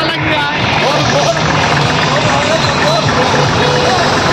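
Tractor engine running steadily under a crowd of many people talking and shouting.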